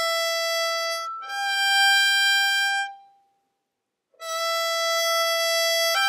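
Violin playing two sustained notes, E then the G above it, slurred in one bow stroke; the note fades out about three seconds in, and after a second's pause the same E-to-G pair is played again.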